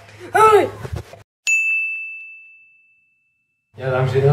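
A single bright electronic ding, one clear tone that strikes sharply and fades out over about a second and a half, set in dead silence like an added editing sound effect. Before it, in the first second, a short vocal cry.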